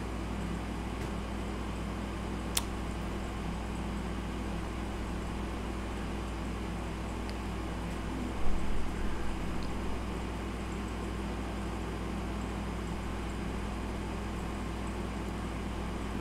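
Steady low electrical hum with a fan-like hiss of background noise. A sharp click comes a few seconds in, and a brief louder sound comes about halfway through.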